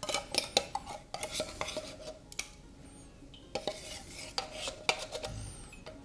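A spoon scraping and tapping inside a metal can of sweetened condensed milk as the last of it is worked out into a bowl: a run of small clicks and scrapes, with a quieter spell in the middle.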